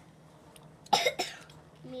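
A person coughing: a short double cough about a second in.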